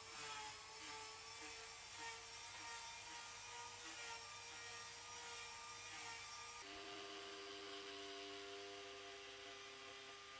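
Faint steady machine whir made of several held tones, which shift to a different, lower set of tones about two-thirds of the way through.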